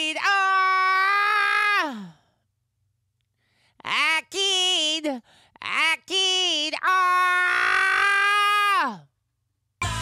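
A man singing unaccompanied in a high voice: long held notes that slide down at the end of each phrase. Three phrases, with a pause of about a second and a half after the first. Full backing music cuts in right at the end.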